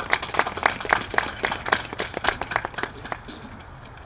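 Audience applauding, a run of quick irregular claps that dies away near the end.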